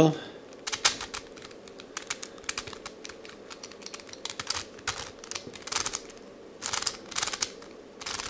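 Plastic pieces of a 5-layer hexagonal dipyramid twisty puzzle clicking as its layers are turned by hand, in uneven bursts of rapid clicks.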